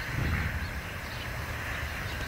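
Outdoor ambience: a steady low rumble with a faint high hiss, the rumble a little louder shortly after the start.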